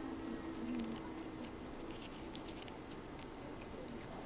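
Toothbrush bristles scrubbing against a cat's teeth: an irregular run of faint scratchy clicks and ticks.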